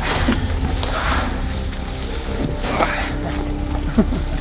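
Background music with sustained, held tones over a steady low bed.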